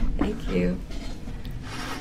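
Low rubbing, handling-type noise, with a short voice sound about half a second in and a brief hiss near the end.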